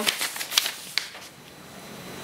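Sheets of printer paper rustling and crackling as they are handled and lifted, with several sharp crinkles in the first second, then fading to a soft rustle.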